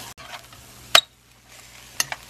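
Metal spatula clinking once, sharply, against the frying pan about halfway through as ground pork is stirred, over a faint hiss of the meat frying.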